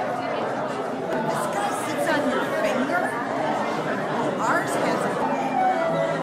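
Many people chatting at once in a large room, an indistinct hubbub of overlapping conversation.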